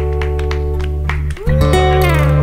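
Instrumental interlude: acoustic guitar playing over held bass notes. The music dips briefly about one and a half seconds in, and a new chord comes in with a gliding note.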